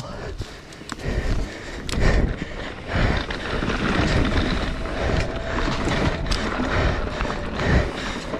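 Mountain bike descending a loose dirt trail: tyres rolling and sliding over loose soil, with the bike rattling and knocking over bumps in an uneven, rushing noise.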